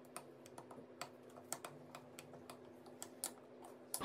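Metal spoon stirring a chilli-and-toasted-rice dipping sauce in a small glass bowl, its tip clicking lightly and irregularly against the glass. Faint.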